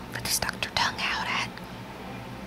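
A person whispering a few words, breathy and without voiced tone, over a steady low hum.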